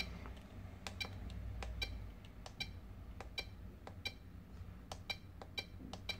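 Short, high key-press beeps from a Flysky FS-i6X RC transmitter as its menu buttons are pressed, about a dozen at irregular intervals. The beeps are faint over a low steady hum.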